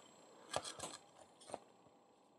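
A few faint, short clicks of hard plastic toy parts being handled and pressed together as a shoulder joint is reassembled, the sharpest click about one and a half seconds in.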